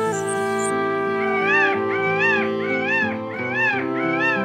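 Indian peafowl (peacock) calling: a run of about five short, loud calls, each rising and then falling in pitch, about 0.7 s apart, over background music.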